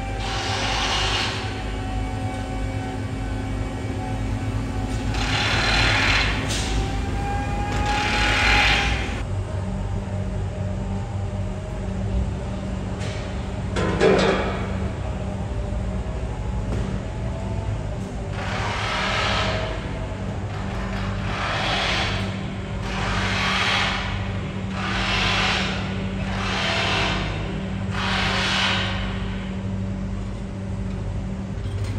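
Construction-site machinery: the steady low engine rumble of a mobile crane lifting steel beams, with a few held tones over it. Rushing bursts of noise come and go, about every second and a half in the last third, and a single loud clank sounds about halfway through.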